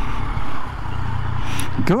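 Yamaha XSR900 three-cylinder motorcycle engine running at low speed in traffic, with steady wind rumble on the rider's camera microphone. A voice comes in at the very end.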